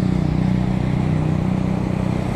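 A motorcycle engine running steadily close by, over wind and road noise from riding.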